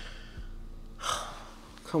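A man's quick, breathy gasp about a second in, over a faint steady low hum.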